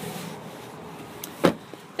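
Light rustle of a handheld phone camera being carried, then one sharp, loud knock about a second and a half in, after a fainter click.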